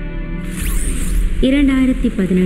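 Background music with a short high whooshing sweep, a transition sound effect, about half a second in. A narrator's voice begins near the end.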